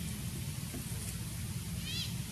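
A baby macaque gives a short, high-pitched squealing call near the end, with fainter high calls about a second in, over a steady low rumble.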